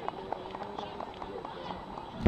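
Faint, indistinct talk of people nearby, with a few light clicks.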